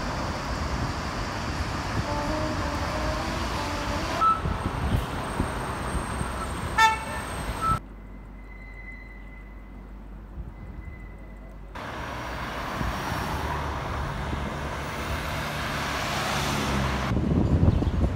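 City street traffic: cars passing with a steady road noise and a few short car horn toots, heard in several separate takes. A quieter stretch in the middle holds only faint background sound with a thin steady high tone.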